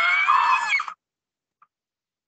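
A single drawn-out, high-pitched animal call, rising slightly in pitch and cutting off about a second in.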